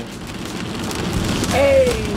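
A rushing hiss of noise that swells over about a second and a half as the music drops away, ending in a brief gliding vocal note.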